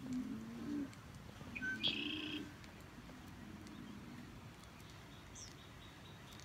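Birds calling: soft low coo-like calls repeat through the first few seconds, with a short bright chirp about two seconds in.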